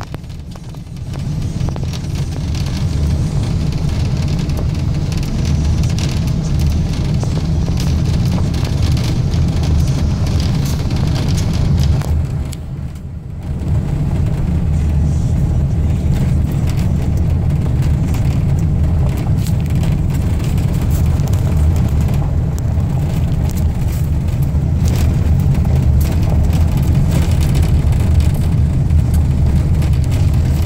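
Car driving along a dirt road, heard from inside the cabin: a steady low rumble of engine and tyres on the unpaved surface. It eases off briefly just after the start and again about 13 seconds in.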